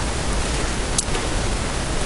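Steady background hiss from the lecture recording, with one faint click about a second in.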